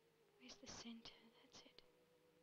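A person whispering: a few short, breathy syllables, faint, from about half a second in until just before the end.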